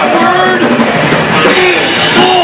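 Heavy metal band playing live and loud: distorted electric guitars over a pounding drum kit.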